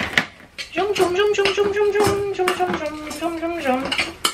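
Clinks and scrapes against a stainless-steel saucepan as seasoning is mixed into flaked saltfish, with a woman humming one long held note through most of it that sinks a little at the end.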